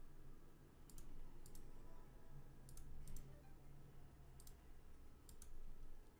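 Faint computer mouse clicks, short sharp clicks often in close pairs, coming every second or so as the slot's spin button is clicked.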